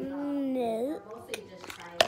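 A voice holding one drawn-out wordless sound for about a second, nearly level and then bending in pitch at the end, followed by a couple of faint clicks.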